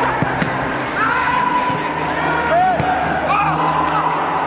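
Voices rising and falling over a steady music or hum bed, with a few sharp knocks in the first half second.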